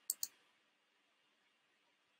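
Two quick, sharp clicks of a computer mouse button, a fraction of a second apart, as an on-screen button is clicked.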